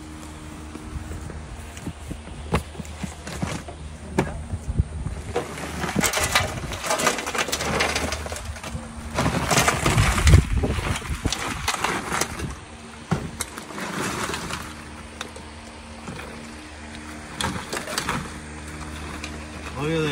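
Boiled crawfish, corn and potatoes tipped out of a plastic tub onto a table: a rattling, rustling clatter that builds from about six seconds in and is loudest around ten seconds, with another short burst a few seconds later.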